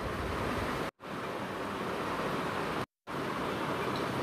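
Steady background hiss of the recording's room noise with no distinct events. It is broken twice by brief gaps of dead silence, about one second and three seconds in, where the recording is cut.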